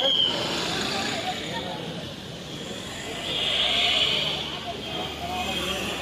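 Busy outdoor ambience: indistinct voices of people over a steady bed of traffic noise, with a brief rise in hiss about three to four seconds in.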